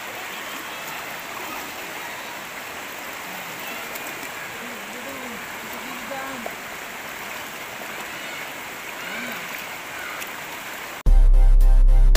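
Shallow river water rushing steadily over rocks. About a second before the end it cuts off abruptly to loud electronic music with heavy bass and a steady beat.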